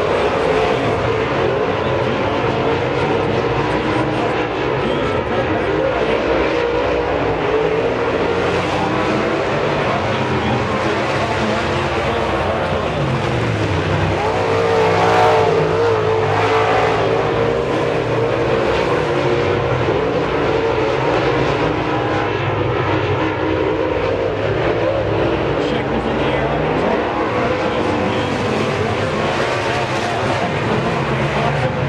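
Dirt-track modified race cars' V8 engines running hard in a pack, the engine pitch falling and rising again as the cars pass through the turns and down the straights; loudest about halfway through.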